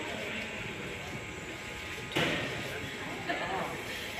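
Indistinct background voices of people talking, with a single sharp knock a little past halfway and a lighter one shortly after.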